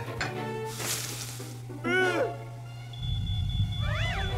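Cartoon soundtrack music with sound effects: a short burst of hiss about a second in, a brief pitched sound that rises and falls around two seconds in, and a low rumble with a steady high tone coming in near the end.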